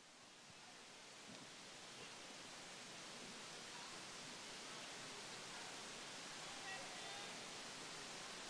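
Faint, steady hiss of gymnasium ambience that slowly gets a little louder, with a few very faint distant voices near the end.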